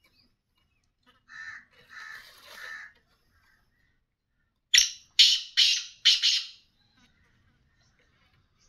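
Black francolin calling: three soft notes, then a few seconds later its loud, harsh, grating call of four quick notes.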